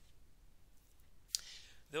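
A single sharp click about two-thirds of the way through, against faint room tone.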